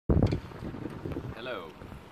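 Wind buffeting the microphone: an uneven low rumble, strongest in the first moments. A man says "So" near the end.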